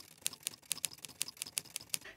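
A quick run of light, sharp clicks, about six a second and unevenly spaced, like keys being tapped.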